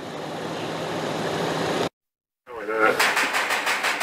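A steady rush of noise grows louder for about two seconds and cuts off. After a short gap comes rapid knocking on a metal security screen door, about six knocks a second.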